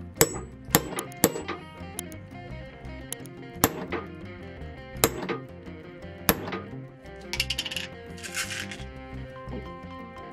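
Steel hollow hole punch struck sharply, about six times at uneven intervals, punching lacing holes through a calfskin shoe quarter, with a short rattle near the end. Background music plays throughout.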